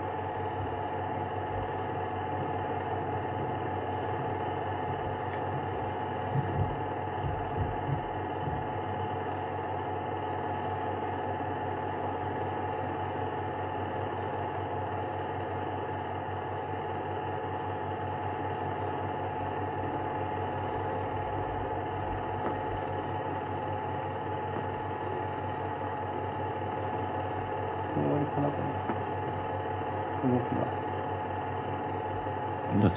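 A steady droning hum of several held tones over a light hiss, with a few low thumps about six to eight seconds in.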